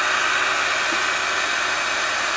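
Heater fan blowing a steady rush of air inside a car cabin.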